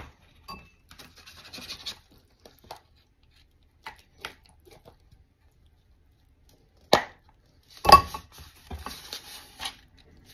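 Canned fruit cocktail tipped and shaken out of a mesh strainer onto a paper plate: faint rustling at first, a sharp tap about seven seconds in, then a run of soft knocks and scrapes a second later.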